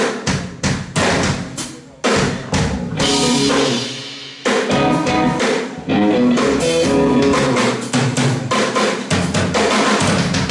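Live drum kit with bass drum and snare, playing with electric guitar and bass guitar. First comes a string of short, sharp band hits with gaps between them, then one hit left to ring and fade. From about halfway the full band plays on without a break.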